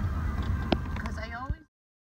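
Low rumble of road and engine noise inside a moving vehicle's cab, with voices and a couple of sharp clicks over it, cutting off abruptly to total silence about a second and a half in.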